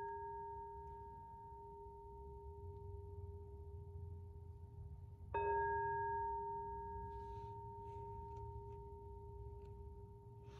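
A singing bowl struck with a mallet. The ring of a strike just before fades slowly, then a second strike about five seconds in rings out again, each with a low and a higher tone plus fainter overtones that die away over several seconds.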